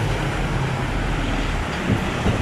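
Street traffic: a steady rush of road noise as a car passes close by, its low rumble fading near the end.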